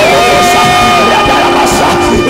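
Church worship music with sustained, steady chords. A voice holds one long note into a microphone for about the first second, with crowd noise behind.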